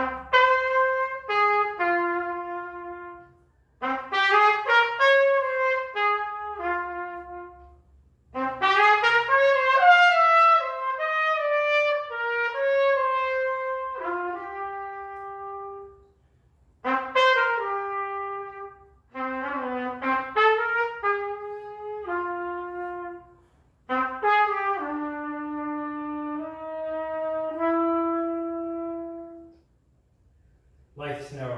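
Unaccompanied solo trumpet playing a slow melody in five phrases separated by short breaths, the last phrase ending on a long held note.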